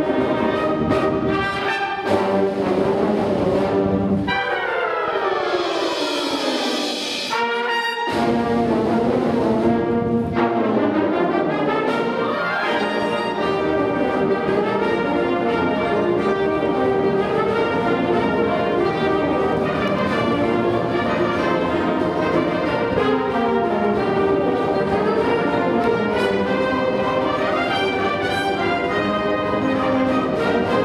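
Live concert wind band playing, with trumpets, trombones and clarinets prominent. About four seconds in, a run of falling notes plays over a bright wash, breaks off near eight seconds, and the full band comes back in.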